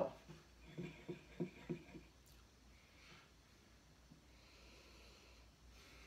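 A man's soft voice in a few short bursts in the first two seconds, then near silence with faint breathing.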